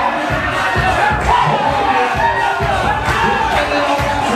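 A crowd shouting and cheering over dance music with a steady thumping beat.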